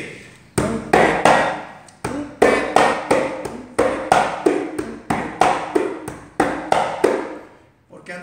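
Conga (tumbadora) played with bare hands: a steady, even run of strokes on the drumhead, about three a second, each ringing briefly.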